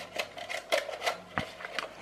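Fingers handling a plastic toy rat and working loose its wires to switch off the beeper circuit inside: a string of small clicks and rubs.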